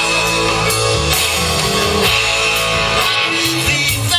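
Live rock jam band playing an instrumental passage, with electric guitars, bass guitar, drums and keyboards.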